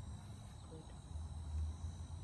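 Outdoor ambience of insects trilling in a steady, high, unbroken tone, over an uneven low rumble.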